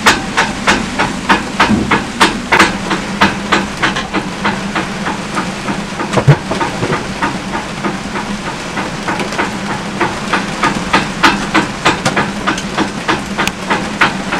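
A sailboat's halyard clanging against the mast in the wind: quick, irregular metallic clanks, several a second, thinning out in the middle and picking up again later, over the steady hiss of rain.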